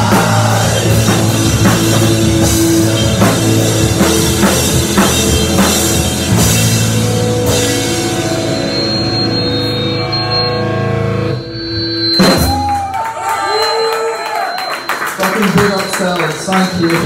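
Live rock band with drums, electric bass and vocals playing loudly, the song ending about three-quarters of the way through. A sharp hit follows, then voices and shouts from the room.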